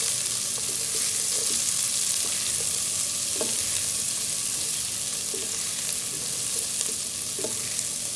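Freshly added chopped onions sizzling in hot oil in a nonstick pan, stirred with a wooden spatula that scrapes the pan now and then. The sizzle stays steady throughout.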